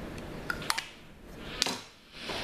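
A few short clicks and taps of small plastic makeup cases and pencils being handled, a pair about half a second in and one more past the middle.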